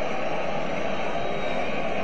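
Steady crowd noise of a packed football stadium, an even wash of sound with no single voice or chant standing out.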